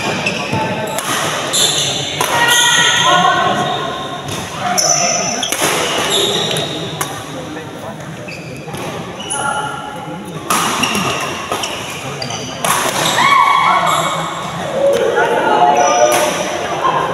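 Badminton rally in a large indoor hall: racket strings hitting the shuttlecock again and again, with players' footwork thudding on the court and voices calling out.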